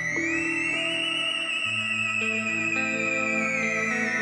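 Theremin playing a high, wavering melody line with vibrato: it slides up in the first second, holds, then glides slowly down, over sustained low accompanying notes that change about one and a half seconds in.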